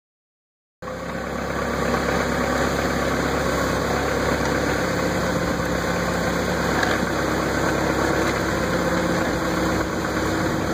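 Forklift engine running steadily, heard close up from the operator's seat, starting abruptly about a second in.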